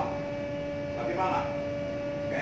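A steady hum of two held tones, one lower and one higher, with faint murmured speech about a second in.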